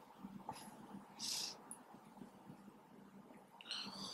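Faint handling of a pencil and plastic protractor on drawing paper: a short soft scratch of pencil on paper about a second in, and a few small clicks as the protractor is shifted and lifted.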